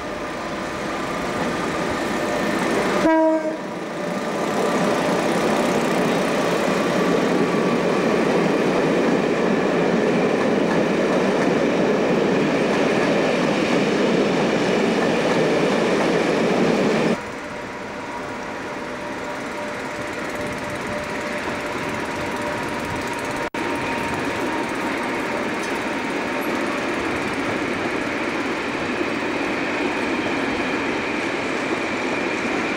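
British Rail Class 87 electric locomotive hauling InterCity coaches past, with a short horn blast about three seconds in, then the loud steady rolling of the coach wheels over the rails. The sound drops suddenly about two thirds of the way through to a quieter steady rumble of another passing train.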